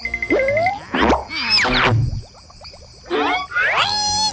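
Cartoon sound effects: a short quick rattle, then springy boings and several rising pitch sweeps in separate bursts, over light music.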